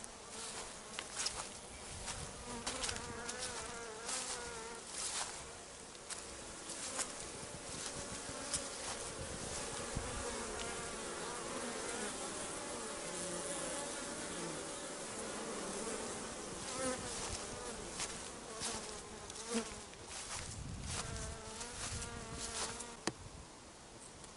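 Honeybees buzzing in flight around their hives on a cleansing flight, many bees passing close with wavering, rising and falling buzz tones, and with frequent short clicks. The buzzing drops off about a second before the end.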